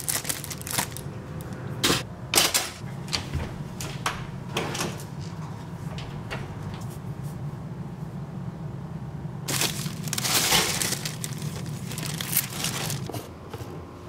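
Kitchen handling sounds: a plastic bread bag crinkling and scattered short clicks and scrapes of food preparation over a steady low hum, with a longer rustle about ten seconds in.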